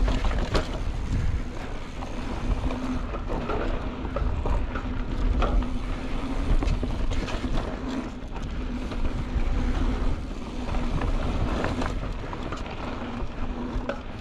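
Polygon Siskiu T7 full-suspension mountain bike rolling fast down a dirt trail: wind rushing over the camera microphone and a steady rumble of knobby tyres on dirt, with scattered knocks and rattles from the bike over bumps.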